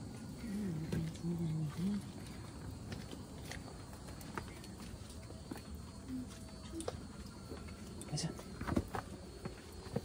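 A low voice murmurs briefly about a second in. Faint scuffs and knocks follow as people clamber over rock in a narrow passage, with a few sharper knocks near the end.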